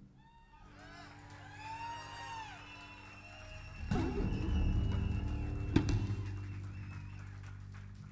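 Solo electric bass guitar played live: high ringing harmonics that glide up and down in pitch, then, about four seconds in, a deep low note with a quick pitch swoop that sustains and slowly dies away. A sharp click sounds about six seconds in.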